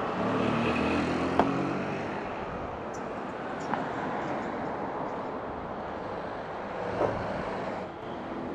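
Steady street traffic noise from passing cars and motorcycles, with one vehicle's engine hum standing out in the first couple of seconds. A few light knocks and clicks sound over it.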